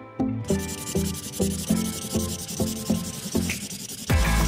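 Black felt-tip marker rubbing and scratching on paper as lines are drawn: a steady scratchy hiss that starts about half a second in, over background music of plucked guitar notes.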